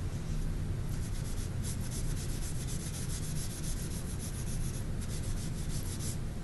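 Pastel chalk being rubbed into paper with a pad in quick, repeated back-and-forth strokes, a dry scratchy rubbing that starts about a second in and stops near the end.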